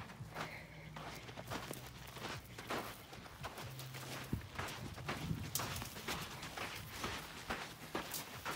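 Horse hooves and a person's footsteps on arena sand, a string of soft, irregular steps and scuffs.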